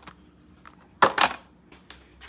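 A sharp knock about a second in, followed by a short rustling scrape, from objects being handled on a workbench; faint small ticks around it.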